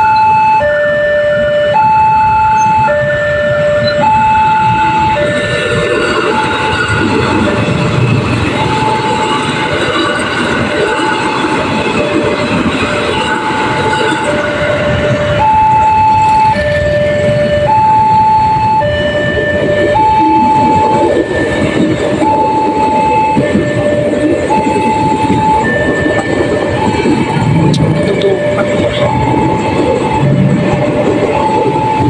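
Railway level-crossing warning alarm sounding a repeating two-tone electronic signal, a higher tone then a lower one, about every second and a half, over steady road traffic of motorbikes and cars. The tones are partly drowned by traffic noise for several seconds, and a train's rumble builds near the end as it approaches the crossing.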